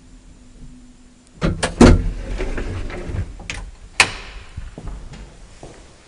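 Hvilan elevator's door and gate being opened: a cluster of loud clanks about a second and a half in, a sliding rattle for a couple of seconds, then a single sharp click about four seconds in.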